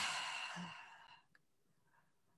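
A woman's breathy sigh as she pauses mid-answer, fading out within about a second.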